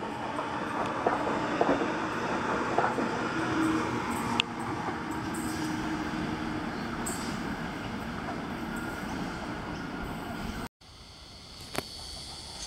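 Sydney Trains Waratah (A set) double-deck electric train pulling out of the platform: a steady rumble of wheels on rail, with a steady electric hum for a few seconds in the middle. The sound cuts off abruptly near the end and a quieter background follows.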